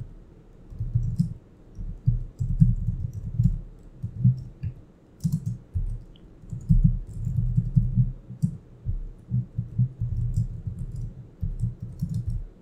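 Typing on a computer keyboard: quick, uneven runs of keystrokes with short pauses between them, each stroke coming through dull and bass-heavy.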